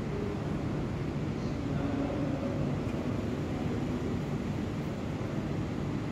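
Steady low rumbling background din with a faint hiss and no distinct events.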